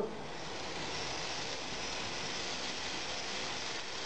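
Three small metal geared motors driving omni wheels, whirring steadily as the robot rotates in place on a hard floor: an even, hissy whir.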